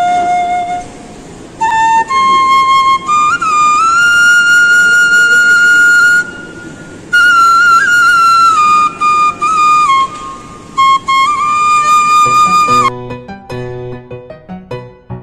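Bansuri, a bamboo side-blown flute, playing a slow melody of held notes with short breathing pauses, including a long held high note in the middle. About a second before the end the flute stops and different music with struck, piano-like notes starts.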